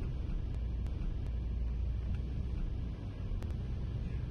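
A steady low rumble with a few faint high ticks over it.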